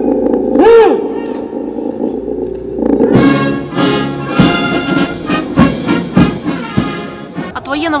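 The end of a shouted parade command, one short sharp call just under a second in. Then, about three seconds in, a military brass band strikes up a march with a steady drum beat, the band's greeting for the parade commander as the troops present arms.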